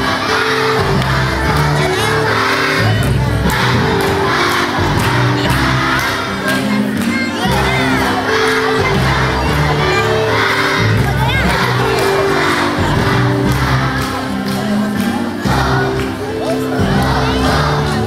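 A large group of children singing loudly together over an instrumental accompaniment whose low notes change every second or so.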